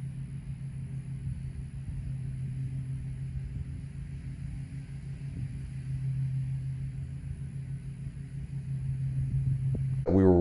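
A steady low mechanical hum with outdoor background noise. It could be an engine or an outdoor motor such as an air-conditioning unit running.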